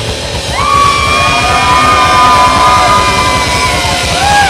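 Live hard rock band playing loud, with electric guitar over the rhythm; a high note slides up about half a second in and is held for about three seconds.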